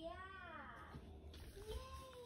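Faint pitched vocal sounds from a person's voice. A drawn-out falling glide comes in the first second, then a shorter rise-and-fall near the end.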